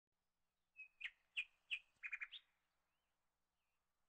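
A bird chirping faintly: four short high chirps about a third of a second apart, then a quick run of four, followed by a few fainter twitters.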